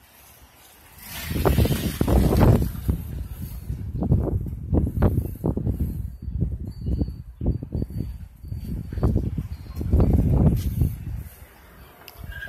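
Wind buffeting a phone's microphone outdoors, a low rumble that rises and falls in irregular gusts.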